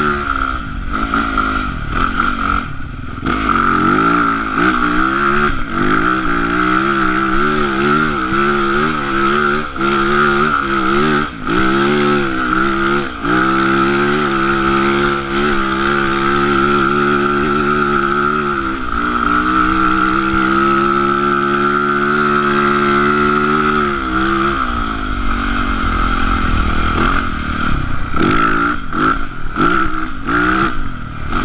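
Yamaha YZ450F dirt bike's single-cylinder four-stroke engine under way, revving up and down with the throttle, with brief dips in pitch a few times. About two-thirds of the way through it holds one steady high note for several seconds, then drops and goes back to uneven revving.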